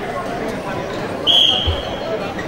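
Referee's whistle blown once, a short high blast about a second and a half in, signalling the restart of the wrestling bout, with a dull thump just after it over hall crowd murmur.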